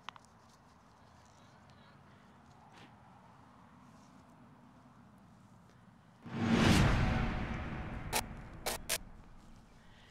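A loud swoosh sound effect swells in suddenly after about six seconds and fades away over a few seconds, followed by three sharp clicks. Before that there is only faint rustling.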